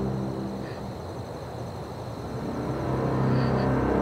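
Dark drama underscore: the held low notes give way to a grainy, low wash of sound that dips quieter in the middle and swells back near the end.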